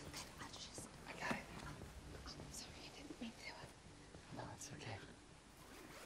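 Faint, quiet dialogue from a television drama playing low in the mix, with a few soft ticks.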